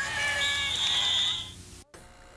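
Held musical chords from a TV news broadcast's break bumper, played through a television set's speaker, with a high steady tone joining about half a second in. The sound fades after about a second and a half and cuts off abruptly just before the end, as the videotape is stopped.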